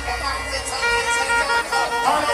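Live dancehall music from a stage sound system, heard from within the crowd, with a held horn-like tone of several steady pitches coming in about halfway through.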